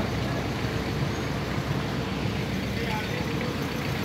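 Heavy vehicle engine running steadily, a low continuous rumble with no change in pace.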